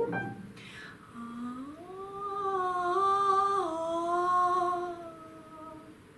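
A woman hums a short melodic phrase: a slow rise into a held note that swells and then steps down by a second and fades, sung with an energetic crescendo toward the phrase's main interval.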